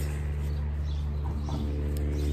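A steady low hum, like an engine or motor running nearby, with a faint short sound about a second and a half in.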